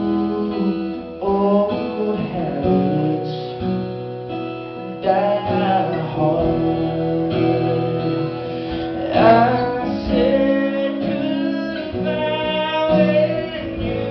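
Live performance of a song: strummed acoustic guitar chords with a man singing over them, his voice sliding through long held notes.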